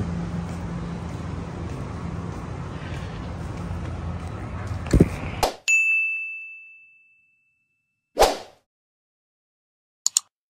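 Steady low hum and outdoor noise that cuts off abruptly about halfway through. A bright, bell-like ding sound effect follows and rings out, fading over about a second and a half. A short whoosh comes near the end.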